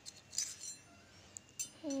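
Stainless steel utensils clinking together as a spoon is set against a steel plate and ladle: two light metallic clinks with a short ring, about half a second in and again near the end.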